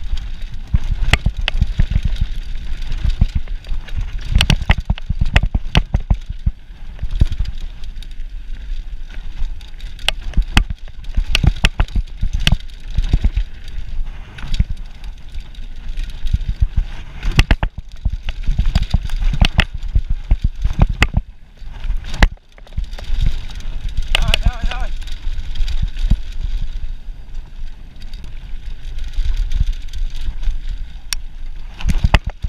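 Mountain bike ridden fast down a dirt trail: frequent sharp knocks and rattles from the bike over rough ground over a steady rush of tyre and air noise.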